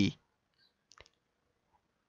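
A single short click about a second in, with a fainter tick just before it; otherwise near silence. The tail of a spoken word ends just as it begins.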